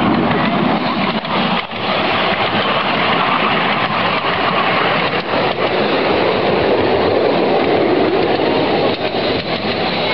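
Miniature ride-on railway train running along its narrow-gauge track, a steady noise of wheels on rails and the moving carriages, heard from aboard a carriage.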